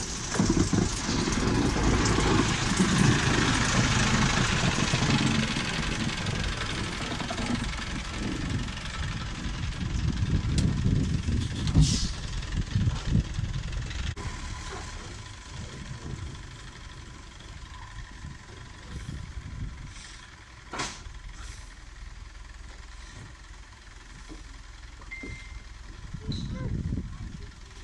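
Small narrow-gauge diesel locomotive's engine running close by, then working as it draws away down the line. It is loudest in the first few seconds and again briefly about ten to twelve seconds in, then fades, with a few sharp clicks later.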